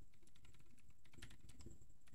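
Faint, quick keystrokes on a computer keyboard: typing a line of code.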